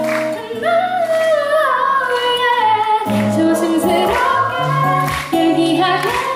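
A woman singing a slow love song live to acoustic guitar accompaniment, her melody gliding up and down over the strummed and picked chords.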